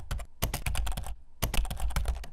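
Keyboard typing sound effect: rapid runs of clicks in three quick bursts with short pauses between them, as text is typed out letter by letter.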